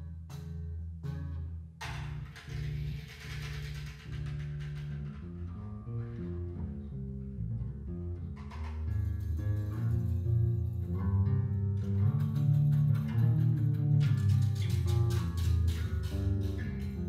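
Electric bass guitar playing a low, moving line in live jazz. Sharp ticks keep a steady pulse at the start and again from near the end, with a brief hissing wash after the opening ticks.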